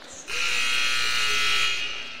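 Gymnasium scoreboard horn sounding one steady, buzzing blast of about a second and a half, signalling the end of a timeout.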